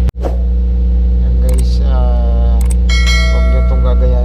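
A loud, steady low machine hum, with a person's voice and a brief ringing tone about three seconds in.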